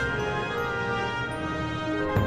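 Instrumental theme music with long, held chords.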